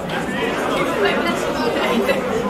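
Indistinct chatter of many voices talking over each other, at a steady level.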